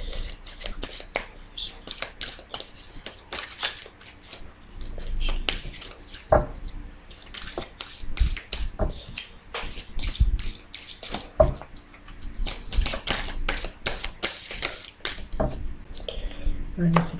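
A deck of oracle cards being shuffled by hand: a continuous run of quick papery clicks and rustles, with a few louder taps of cards along the way.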